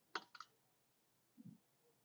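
Near silence with two faint clicks in quick succession just after the start and a faint low soft thump a little past the middle.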